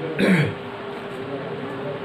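A man briefly clears his throat once, a short rasp near the start, over a faint steady background hum.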